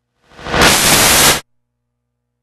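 A loud burst of white-noise static that swells in over about a third of a second, holds steady for about a second, then cuts off abruptly.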